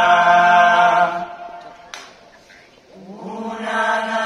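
Murga chorus of young voices singing a held chord in harmony, which dies away a little over a second in. After a short lull the chorus comes back in near the end, sliding up into the next held note.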